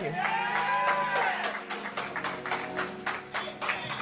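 Sparse, light applause from a small congregation: scattered separate claps rather than a full round, weak enough that it is called for to be better. A drawn-out voice call rises and falls in the first second or so, and faint held instrument notes sound underneath in the second half.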